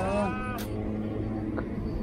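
A man's drawn-out call trails off with a falling pitch in the first half-second, then a low, steady outdoor background with a couple of faint clicks.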